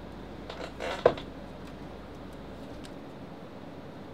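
Steady room hiss with a low hum that stops a little before three seconds in, and a single sharp click about a second in.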